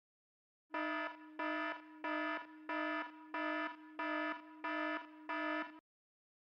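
An electronic alarm-style tone beeping in even pulses, about one and a half a second. It starts a little under a second in and stops shortly before the end, about eight beeps on one steady pitch.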